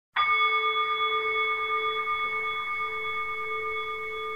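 A single bell-like chime, struck once at the very start, rings on with several clear overtones and fades slowly. It opens the soundtrack music.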